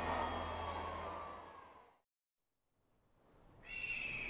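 A sustained soundtrack bed with steady held tones fades out to silence about halfway through. Near the end a new background sound fades in, carrying a high whistling tone that dips slightly in pitch.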